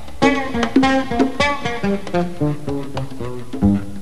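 Electric bass guitar playing a quick run of plucked notes, with the line stepping down in pitch in the second half.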